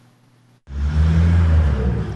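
A brief near-silent gap, then from about two-thirds of a second in, the loud, steady low rumble of a motor vehicle engine with outdoor street noise over it.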